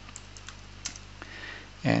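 Computer keyboard being typed on: a handful of separate keystrokes, irregularly spaced.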